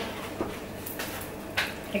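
Quiet room tone in a pause, with a faint click shortly after the start and a brief knock a little before the end.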